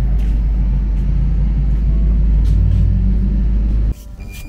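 Steady low rumble of a moving car, cutting off abruptly near the end.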